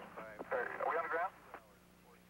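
A man's voice over a two-way radio link, cutting off after about a second, followed by faint radio hiss and a steady hum.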